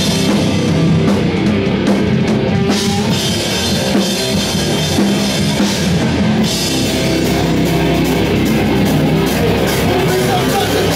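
Live rock band playing loud and without a break: a drum kit with cymbals driving it, and guitar.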